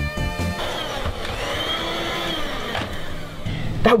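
A few notes of music end about half a second in. Then a steady whooshing noise runs for about three seconds, with a faint tone inside it that rises and falls, like a transition sound effect.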